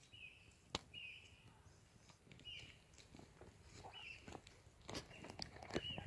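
Faint bird chirps, short high calls repeated about every second, with a few soft clicks in between.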